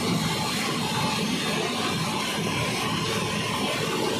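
Steady, loud machinery noise with a faint hum: a horizontal peeler centrifuge running and discharging dewatered maize flakes through its chute.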